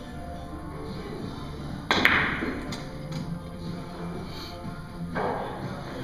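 A Russian billiards (pyramid) shot: one sharp, loud crack of cue and ball striking about two seconds in, followed by a few light ball clicks and a second, softer knock about three seconds later.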